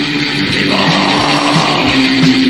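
Old-school death metal band playing a distorted electric guitar riff over bass and drums, on a lo-fi 1990 demo recording with dull highs. A harsh, noisy layer in the middle range joins about two-thirds of a second in and lasts about a second.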